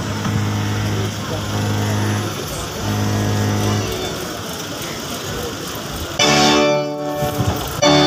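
Keyboard music of held chords, under a murmur of voices; the chords turn louder and fuller about six seconds in.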